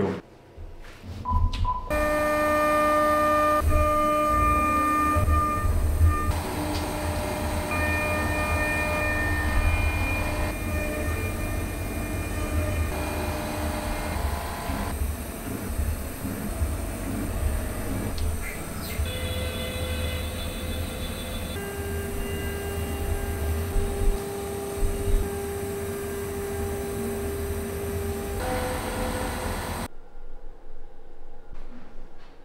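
CNC router milling an aluminium plate: a steady high whine from the spindle and cutter over a pulsing low rumble, the pitch shifting to a new steady note every few seconds.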